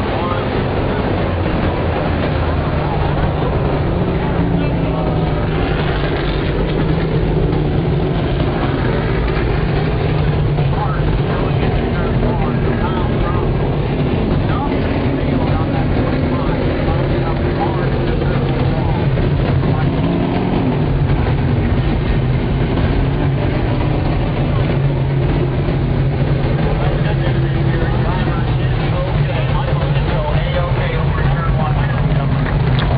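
Several stock car engines idling and running slowly under caution, a steady low drone with no revving.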